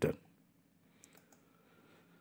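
The tail of a spoken word, then near silence broken by three faint, short clicks about a second in.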